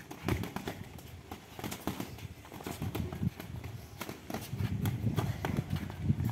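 Irregular light taps and scuffs from several boxers' footwork on paving and their padded gloves meeting as they trade counter punches.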